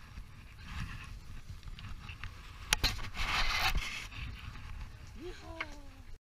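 On-deck sounds aboard a fishing boat as a yellowtail is brought up over the rail: a low rumble of wind and water, a sharp knock between two and three seconds in, then about a second of rushing, scraping noise, the loudest part. A short voice cry rises and falls near the end.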